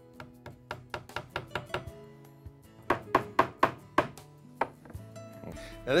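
Claw hammer tapping finish nails into a pressure-treated southern pine board: quick runs of light strikes, with a short pause a little after two seconds and louder blows near the middle.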